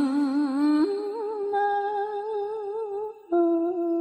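A single voice chanting Vietnamese verse holds a long, wordless hummed note with a wide, slow vibrato. The pitch steps up about a second in, breaks off briefly near the end, comes back, and fades away.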